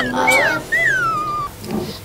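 A child yawning: a high, whining voice falling in pitch, a short one followed by a longer drawn-out one.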